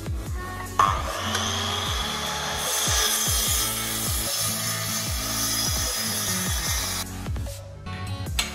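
Metabo sliding mitre saw cutting through aluminium extrusion profile: a loud, harsh cutting sound that starts suddenly about a second in and stops near the end, over electronic music with a bass beat.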